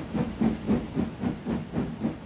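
Steam locomotive chuffing steadily, about four exhaust beats a second, each beat a short hiss of steam.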